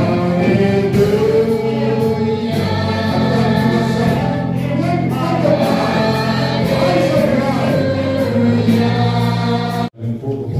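A choir singing a Christian hymn, unbroken, over steady low sustained notes. It breaks off abruptly just before the end.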